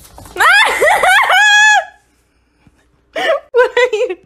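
A high-pitched voice: a quick run of rising squeals that ends in a held note, followed after a pause by a few shorter voice sounds near the end.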